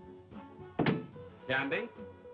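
A door pushed shut with a single thunk about a second in, over soft background music.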